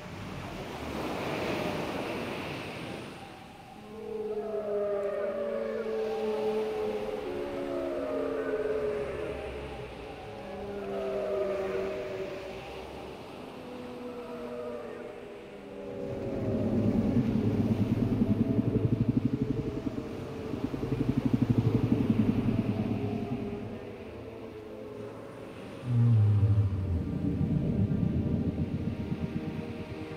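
Surf washing for the first few seconds, then a run of gliding, moaning whale calls that rise and fall in pitch. From about halfway, low buzzing pulsed rumbles take over, with a sudden deep rising tone near the end.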